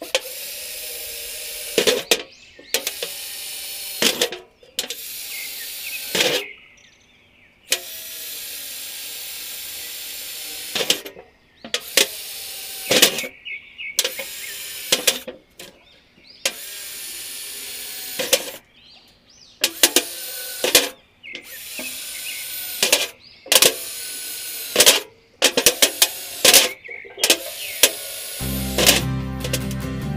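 Cordless electric drill boring holes through the bottom of a thin sheet-metal biscuit tin, in a dozen or so short runs of a second to a few seconds each, with sharp clicks between runs.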